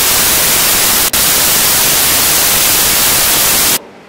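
Loud, even static hiss in the audio signal, swamping everything else, with one momentary break about a second in, cutting off suddenly near the end.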